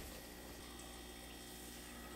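Faint steady room tone: low hiss with a light electrical hum.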